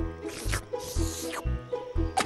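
Light cartoon background music with a low beat about twice a second under held melody notes, with short hissy sounds over it.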